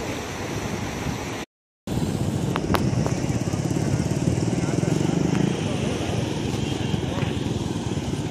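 Floodwater rushing through a breach in a concrete-lined irrigation canal: a loud, steady rushing noise with wind buffeting the microphone, broken by a moment of silence at a cut.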